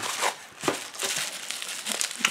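Plastic bubble wrap crinkling in the hands as it is unwrapped from a small package, with irregular crackles.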